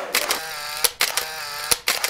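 Outro-animation sound effects: a held electronic tone broken by two sharp clicks about a second apart.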